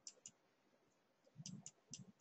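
Near silence with a few faint clicks, most of them bunched together about one and a half seconds in.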